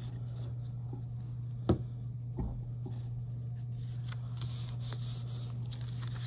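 Light paper handling as a folded index card is laid on a notebook page and pressed flat, with soft rustling, two short knocks in the second and third seconds, and a few faint ticks, over a steady low hum.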